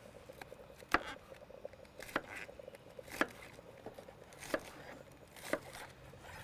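Kitchen knife cutting food on a wooden cutting board: sharp knocks of the blade on the board about once a second, with fainter ticks between.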